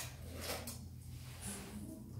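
Two short, faint handling noises, at the start and about half a second in, over a low steady room hum.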